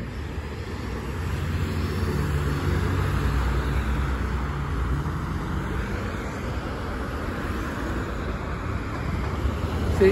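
Road traffic: cars driving past on a multi-lane road, tyre and engine noise over a steady low rumble, building a couple of seconds in, easing off, then building again near the end.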